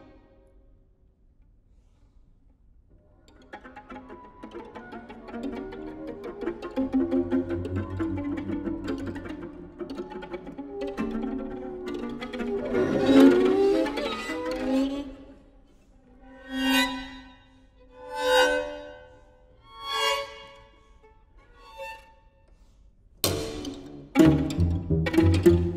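String quartet of two violins, viola and cello playing a contemporary piece. After about three seconds of near silence, a dense mass of bowed string sound builds to a loud peak. It breaks into four separate short swelling notes, each fainter than the last, and after a pause the quartet comes in suddenly and loudly just before the end.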